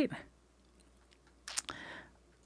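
The end of a spoken word, then quiet, then a brief cluster of soft clicks with a breathy sound about a second and a half in.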